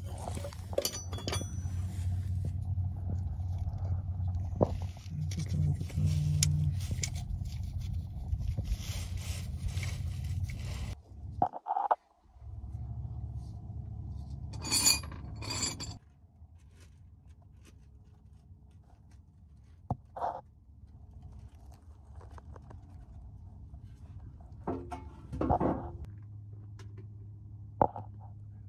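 Hand tools and metal parts clinking and scraping during work under a car, over a steady low hum. The hum breaks off about eleven seconds in, and after that short, sharp clinks come now and then.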